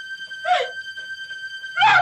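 Two short wordless cries from a voice, each falling in pitch, about half a second in and again near the end, over a steady held keyboard drone from the soundtrack; low bass notes come in with the second cry.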